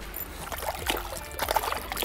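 Water in an ice-fishing hole splashing and trickling lightly as a walleye is held in it and released, with a few small irregular splashes.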